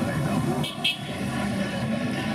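Busy street traffic: vehicle engines running with voices mixed in, and two short high sounds, close together, a little under a second in.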